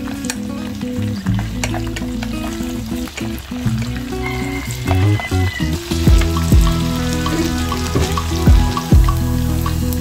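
Garlic and chili frying in oil in an electric cooking pot, a steady sizzle with chopsticks stirring through it. Background music plays over it, with deep drum thumps coming in about six seconds in.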